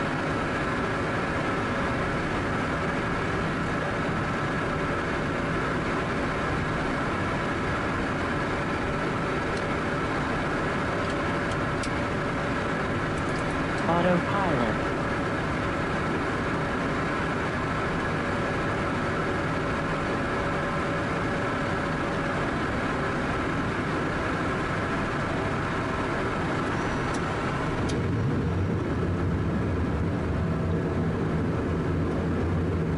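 Steady cockpit noise of a Cessna Citation M2 jet in flight: engine and airflow noise with steady high tones. There is a brief pitched sound with a wavering pitch about halfway through, and near the end the sound deepens as the higher tones fade.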